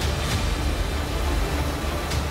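News music bed: a steady, heavy low drone under a noisy hiss, with a few soft ticks near the end.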